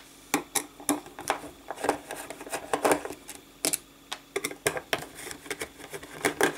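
A small screwdriver backing screws out of a project enclosure's base plate: a run of irregular sharp clicks and taps as the tool, the small screws and the case knock against each other and the desk.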